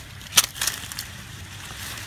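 Avocado leaves and branches rustling and brushing as a hand pushes into the tree, with one sharp crack about half a second in and a few lighter clicks just after.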